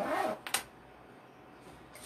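A brief vocal murmur, then a single sharp click about half a second in, followed by quiet room tone.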